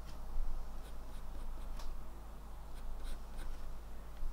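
Graphite pencil drawing on watercolour paper: light scratchy strokes, several short ones in a row.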